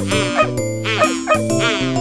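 A cartoon puppy barking, a string of short yips about two or three a second, over the instrumental backing of a children's song.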